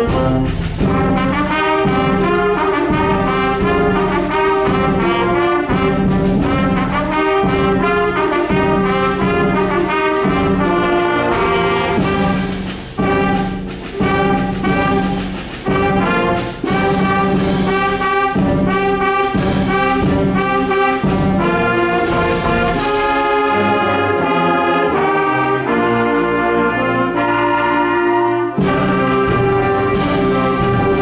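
School concert band playing, with brass and woodwinds over a steady percussion beat. Near the end the low brass and bass drop out for a lighter passage, then the full band comes back in.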